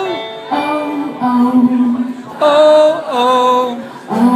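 Live song: a woman singing held notes over keyboard accompaniment, the melody moving through a series of sustained notes that step between pitches.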